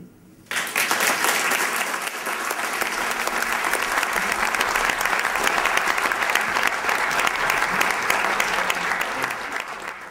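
Audience applauding, starting about half a second in and holding steady, then fading out at the very end.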